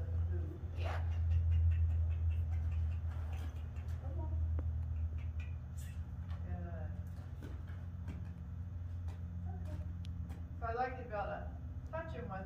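A steady low rumble, loudest in the first few seconds, with scattered light clicks and faint, distant voices, briefly clearer near the end.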